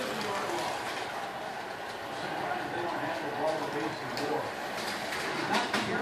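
Slot cars running laps on a multi-lane track: a steady, even whir.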